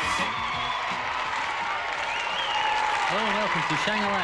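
A studio audience applauding and cheering after a song, with a high shout rising over the clapping about two seconds in. Near the end a man's voice begins to speak over the applause.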